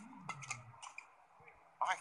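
Badminton rally sounds: sharp racket strikes on the shuttlecock and short squeaks of players' shoes on the court mat, under a commentator's voice.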